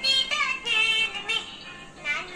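A Hindi children's song: sung phrases over a musical accompaniment.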